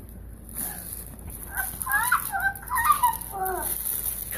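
A young child's high-pitched, wordless squealing and babbling, a string of quick rising and falling sounds starting about one and a half seconds in.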